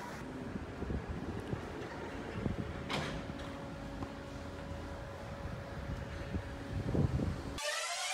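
Outdoor ambient noise with an uneven low rumble, a faint steady hum joining about three seconds in and a single click; music cuts in just before the end.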